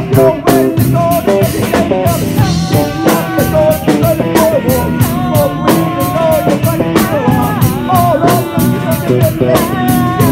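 A live rock band playing a fast, steady beat on drum kit, with electric guitar and a singer's voice over it.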